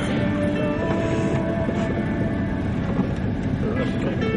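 Steady low rumble of a moving vehicle, with music and faint voices behind it.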